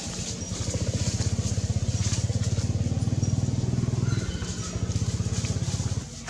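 An engine running, with a rapid, even low pulse that is loudest through the middle and eases a little about four seconds in.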